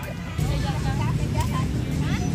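People talking, over a low steady rumble that grows louder about half a second in.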